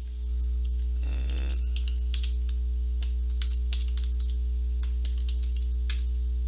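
Computer keyboard keys tapped one by one at about two a second as a terminal command is typed, over a steady low electrical hum. A short rustling noise comes about a second in.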